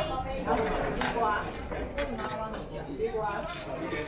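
People talking in a busy dining room, with a few light clinks of dishes and utensils.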